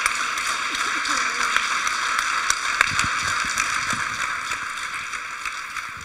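Audience and panel applauding, an even clatter of clapping hands that tapers off near the end.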